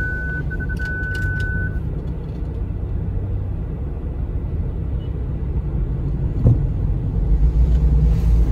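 Low car rumble heard from inside the cabin in slow traffic, growing stronger near the end as the car moves off. A steady high electronic beep sounds for the first two seconds, and there is a single knock about six and a half seconds in.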